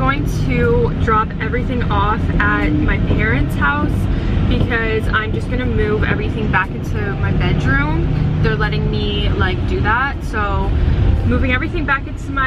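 A woman talking over the steady low rumble of a rental cargo van's engine and road noise, heard from inside the cab.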